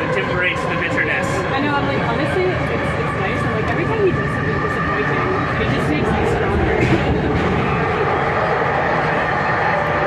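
Vancouver SkyTrain car running between stations, heard from inside the car: a steady rumble with a steady high-pitched tone over it.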